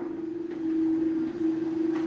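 A single steady droning tone, held without a break and swelling slightly in the middle, under a pause in the talk.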